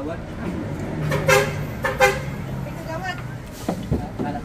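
A motor vehicle running close by, with two short horn toots, about a second in and again at two seconds, over faint background voices.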